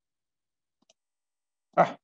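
Near silence with one faint click about a second in, then a man's voice says "ah" near the end.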